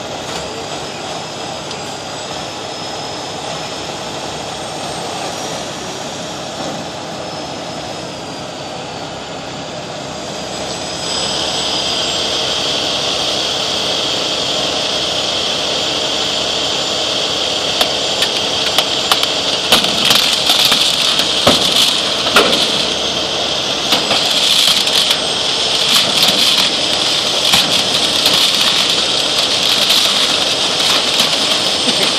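Century 1140 rotator wrecker's engine and hydraulics running steadily while the boom lowers a loaded tanker trailer onto a car. About eleven seconds in the sound grows louder with a steady high whine, and from about eighteen seconds scattered sharp crackles and snaps come on top.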